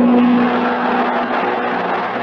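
Operatic recording: one long held note over a dense, noisy full-ensemble sound; the held note stops near the end.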